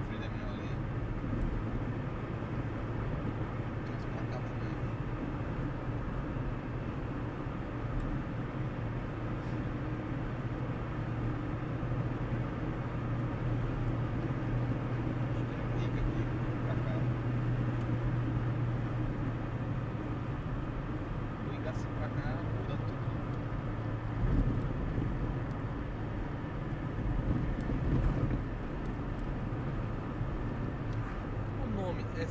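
Car driving at highway speed heard from inside the cabin: a steady low engine drone with road and tyre noise. It swells briefly twice near the end.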